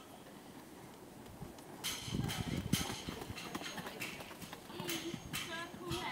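Pony's hooves on a sand arena at a trot, the hoofbeats starting about two seconds in and growing louder as it passes close by. Voices can be heard faintly near the end.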